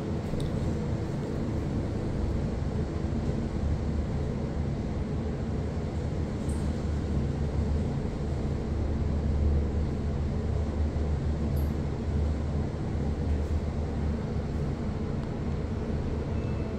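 Steady low rumble and hum of a ThyssenKrupp passenger elevator car travelling downward between floors, heard from inside the car.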